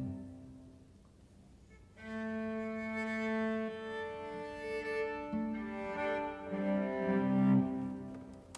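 Viola and cello duo: a bowed chord dies away slowly in the church's long reverberation, then about two seconds in both instruments take up slow, sustained bowed notes that change pitch every second or so and swell near the end.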